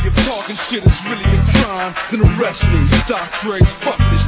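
Hip hop track playing: rap vocals over a beat with heavy bass notes and punchy drum hits.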